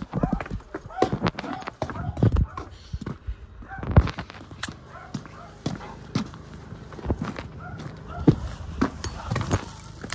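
Footsteps on hard ground, with irregular knocks from carried bags and low voices in between.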